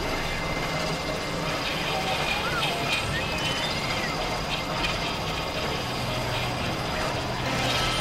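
Experimental electronic noise-and-drone texture from synthesizers: a dense, steady wash of noise with thin sustained high tones. Rattling clicks and small chirps come through in the middle, and a low hum enters about six seconds in.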